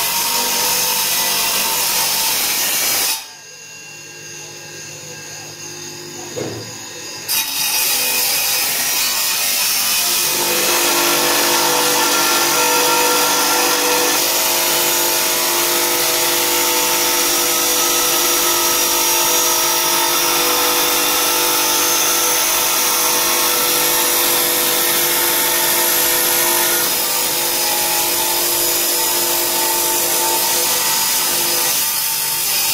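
Motor-driven 150 mm stone-cutting disc sawing through a fossilized giant clam shell block: a steady grinding whine over the motor's hum. The sound drops sharply a few seconds in and returns at full level about four seconds later.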